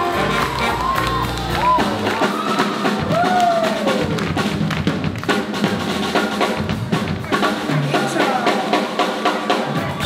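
Live jazz band playing swing music, with a drum kit keeping a steady beat.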